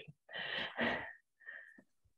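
A person breathing out sharply near a microphone: two short breathy puffs in quick succession, then a fainter third just before the end.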